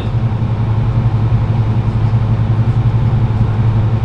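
A steady low hum with a faint even hiss over it, unchanging throughout.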